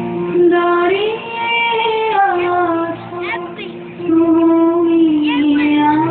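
A high voice singing a melody over music, with brief dips in loudness between phrases.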